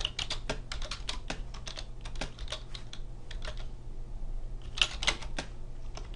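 Typing on a computer keyboard: a fast run of keystrokes, then scattered taps and a short pause, then another quick cluster about five seconds in. A faint steady low hum sits underneath.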